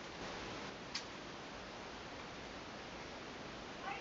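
Wooden knitting needles give one faint click about a second in, over a steady low hiss of room noise.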